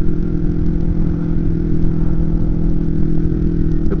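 Kawasaki Ninja 250R's parallel-twin engine running at steady revs while the bike cruises, heard from a helmet-mounted camera.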